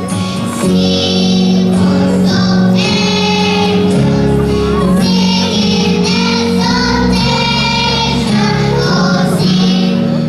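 Choir of young children singing a song together over instrumental accompaniment, with bass notes that change every few seconds beneath the voices.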